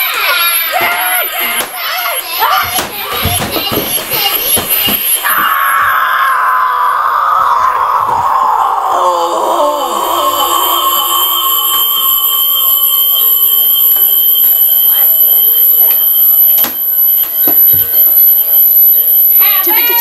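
Child's electronic toy sounding a long electronic tone that slides steadily down in pitch for about six seconds, then settles into steady, unchanging tones; the child takes it for broken. A child shouts over it in the first few seconds.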